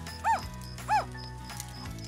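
Two short squeaky chirps from a cartoon-style character voice, each rising then falling in pitch, about two-thirds of a second apart, over soft background music.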